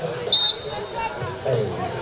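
A referee's whistle: one short, loud, high blast that signals the restart of play, over crowd chatter.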